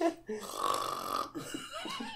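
A burp lasting about a second, starting about half a second in, with faint voice sounds after it.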